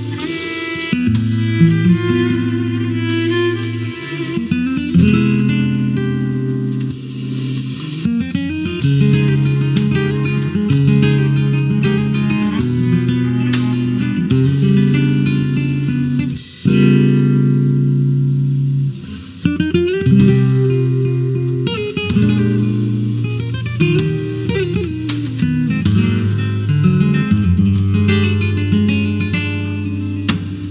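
A cello and an acoustic guitar playing a slow piece together, built of long held notes that change every second or two.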